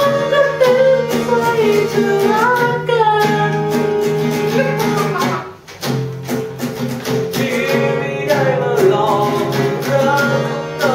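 Two acoustic guitars strummed together under singing. The voice drops out for a few seconds partway through while the chords carry on, with a brief lull at about five and a half seconds, and the singing comes back near the end.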